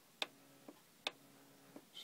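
Two sharp clicks about a second apart, each followed by a brief faint hum: the search controls of an Onkyo CP-1046F turntable being pressed and its automatic tonearm mechanism moving the arm across the record.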